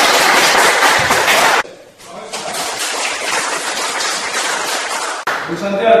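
Audience applauding: loud clapping for about the first second and a half, then a quieter stretch of clapping that breaks off abruptly about five seconds in.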